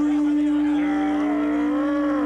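An animal horn blown like a trumpet, holding one steady note, with crowd voices alongside.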